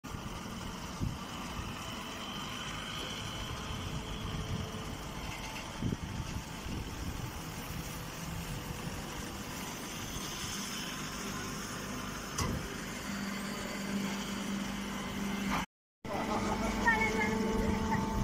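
Baling machinery running: a steady mechanical din with a few scattered knocks, joined about two-thirds of the way through by a steady low hum. The sound cuts out for a moment near the end and comes back louder.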